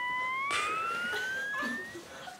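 An edited-in comedy sound effect: a steady electronic tone rising slowly in pitch, about an octave over two seconds, with a hiss joining about half a second in.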